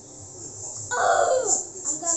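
A child's loud, high-pitched exclamation about a second in: one call that falls in pitch.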